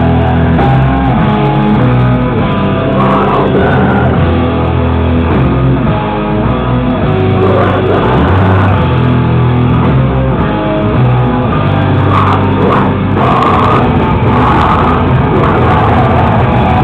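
Live rock band playing loudly, with guitar over a heavy bass and drum mix.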